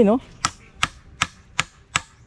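Hammer nailing together a wooden bed frame: five sharp, even strikes on the wood, about two and a half a second.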